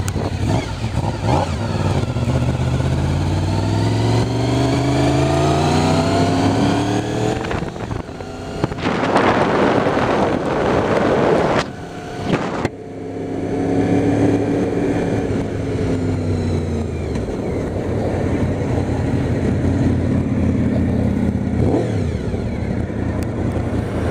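Motorcycle engine pulling away, its pitch rising again and again as it goes up through the gears. About nine seconds in comes a loud rush of noise for a few seconds, then the engine runs on more steadily with a slight dip in pitch.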